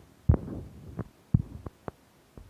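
Handling noise on a phone's microphone: a series of low thumps and knocks as the phone is moved and gripped. There are two heavy thumps about a second apart, with lighter taps between and after them.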